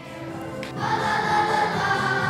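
Choral music: a choir singing long held notes, coming in a little under a second in and growing louder.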